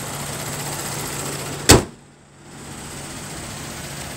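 The 2016 GMC Acadia's 3.6-litre V6 idling steadily, with the hood slammed shut in a single loud bang a little under halfway through; after a brief dip, the idle carries on more quietly.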